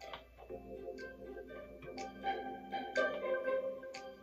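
Playful instrumental iMovie soundtrack music played from an iPad over Bluetooth through a Samson Expedition Express portable speaker, heard in the room. Held tones with a light struck note about once a second.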